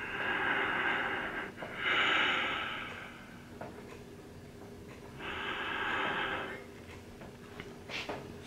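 A man breathing heavily through his open mouth close to the microphone, three long, slow breaths with pauses between, put on as a deadpan imitation of 'mouth breathing'.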